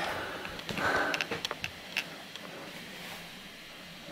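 A person's short sniff about a second in, followed by a few faint clicks, then quiet room tone.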